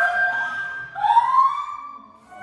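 Edited-in comedic sound effect: it starts suddenly on a held tone, and about a second in a second tone rises and holds.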